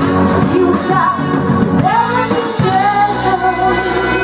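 Live blues band with a female singer, electric guitar, drums, saxophone and trumpet. The sung line gives way to long held notes about two-thirds of the way through.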